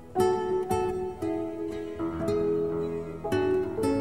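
Instrumental music: an acoustic guitar picks a slow melody, single notes and chords struck about once or twice a second and left to ring.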